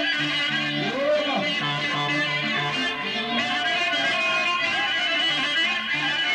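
Live Sarakatsan folk dance music from a small band: electric guitar and keyboard keep up a steady, bouncing accompaniment while a clarinet plays sliding melodic lines over it.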